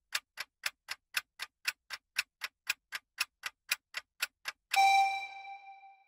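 Countdown-timer sound effect: a clock ticking about four times a second, then a single ringing ding about three-quarters of the way through that slowly fades, marking the end of the countdown.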